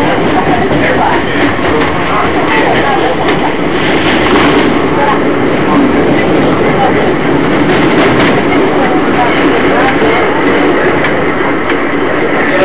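An R188 subway car running at speed, heard from inside the car: a loud, steady noise of wheels on rail, with a few faint clicks.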